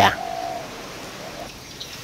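A short pause in talk holding faint background noise and a brief, faint bird call in the first half-second.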